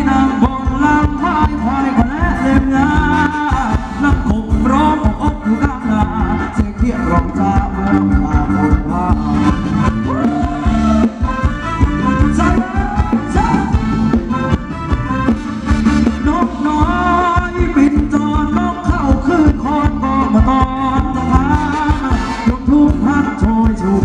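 Loud live Thai ramwong band music with a steady driving bass beat and a sung or played melody over it.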